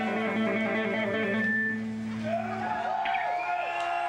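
Rock band's electric guitars and bass holding a final chord that rings and fades out about two seconds in, followed by the club crowd starting to cheer and shout.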